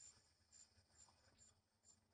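Near silence, with a faint high-pitched insect chirp repeating about twice a second.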